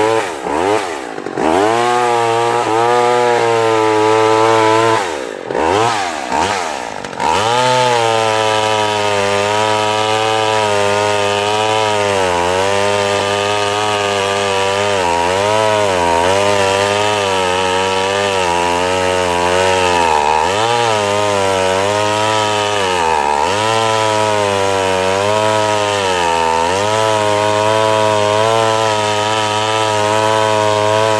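McCulloch Mac 110 two-stroke chainsaw revving, dropping back twice in the first seven seconds, then held at high revs while cutting a branch, its pitch sagging briefly every few seconds as the chain bites. The chain is dull and needs replacing.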